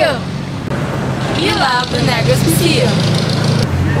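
People's voices talking over a steady low hum, which changes character near the end.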